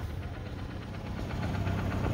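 Motor vehicle engine running with a low, steady hum.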